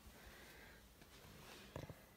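Near silence: room tone, with one faint short sound near the end.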